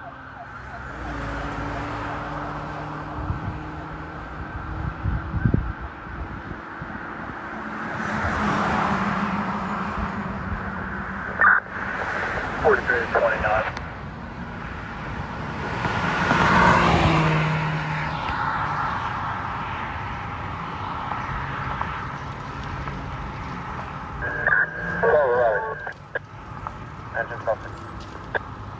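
Road traffic passing by, with short bursts of a rapidly warbling police siren about a third of the way in and again near the end.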